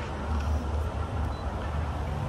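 Steady low background rumble of vehicle noise.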